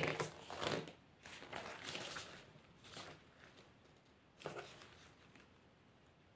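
Paper leaflets rustling as they are handled: a few short rustles, the loudest in the first second and a last one about four and a half seconds in.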